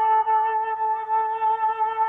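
Instrumental music: a single long held note with a slight waver, played on a flute-like melodic instrument.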